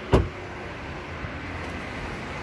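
A car door shutting with a single sharp thump just after the start, followed by steady low background noise.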